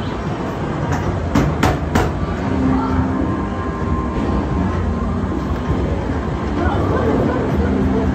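Loud arcade din: machines humming and playing held electronic tones over background crowd chatter. Four sharp knocks come in quick succession about a second in.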